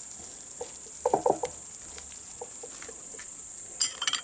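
Diced zucchini frying in a pan on an electric hotplate, a steady quiet sizzle, with brief distant children's voices a little after a second in.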